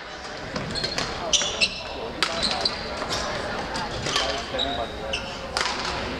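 Badminton play on a hardwood gym floor: shoes squeaking briefly and repeatedly, and a few sharp racket hits on the shuttlecock, the clearest near the middle and near the end.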